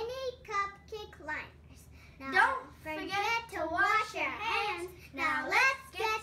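Children singing in high voices, with held, gliding notes.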